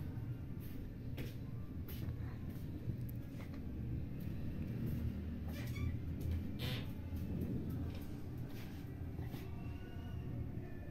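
Flat steel spatula scraping and pushing moist roasted semolina around a steel kadhai, with irregular scrapes and light clicks of metal on metal over a steady low rumble.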